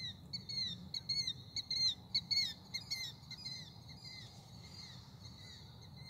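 Night-calling birds giving short, downward-slurred calls in quick series, several a second, thinning out after about three seconds, over a faint steady low hum.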